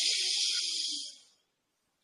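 A man drawing a long, deep breath in, one of three preparatory yoga breaths, heard as a steady hiss that stops about a second in.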